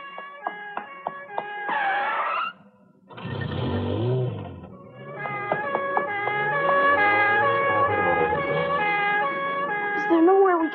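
Background music with picked notes. About two seconds in, a police siren wails briefly, then a car rushes past with its engine running, and the music carries on.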